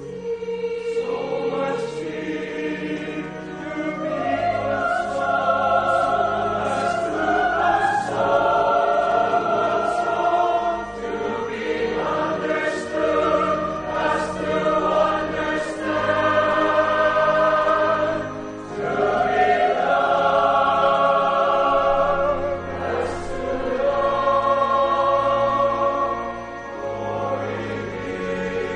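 Church choir singing a hymn, with long held low notes sustained beneath the voices.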